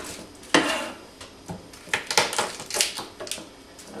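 Kitchen knife chopping garlic on a cutting board: a run of sharp, irregular knocks, the loudest about half a second in.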